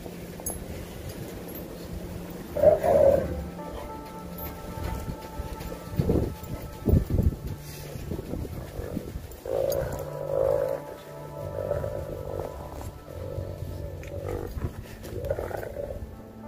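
Dogs growling at each other in repeated throaty bursts as they wrestle, with a few low thumps about six to seven seconds in.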